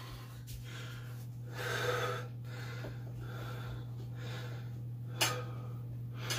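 A man breathing hard between exercise sets, several audible breaths in and out, over a steady low hum. There is a short sharp sound about five seconds in.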